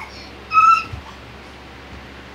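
A small child's short, high-pitched squeal, held on one note for about a third of a second, followed by a soft low thud.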